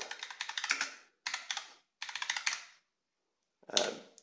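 Computer keyboard keys clicking as a short command is typed, in three quick runs of keystrokes with brief pauses between them, then a gap near the end.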